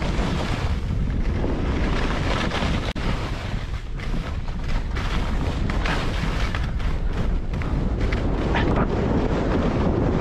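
Wind buffeting the microphone of a body-mounted camera on a fast ski descent, with skis scraping and chattering over chopped-up, bumpy snow.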